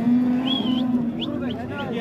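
A sheep giving one long, low, steady bleat lasting about a second and a half.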